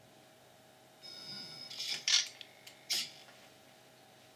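A short electronic beep with several high overtones about a second in, lasting under a second, followed by two brief noisy clicks, the first near the two-second mark and the second a second later.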